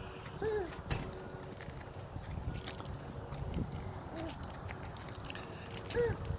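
A toddler's short vocal sounds, each rising and falling in pitch, about half a second in and again around four seconds, over scattered crunches of small feet on gravel.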